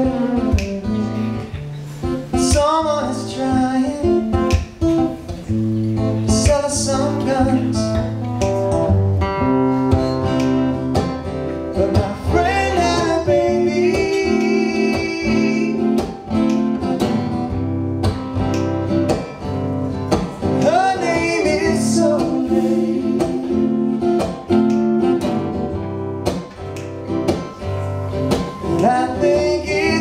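Live acoustic song: an acoustic guitar strummed and picked with a man singing, and a woman's voice joining in at the second microphone.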